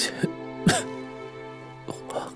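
A bedridden sick man coughing and clearing his throat, three short harsh coughs in the first second with the last the loudest, over soft sustained background music.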